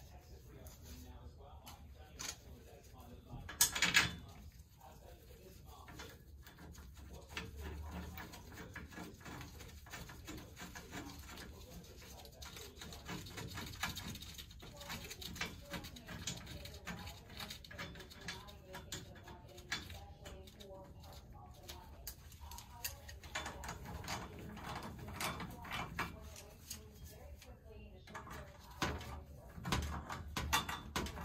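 Small clicks and knocks of hand tools working the flange bolts on a circulator pump, with one louder clatter about four seconds in.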